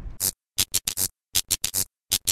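Glitch-style sound effect of the kind used for a logo sting: about nine short, sharp noisy hits in a quick, uneven stuttering rhythm, with dead silence between them.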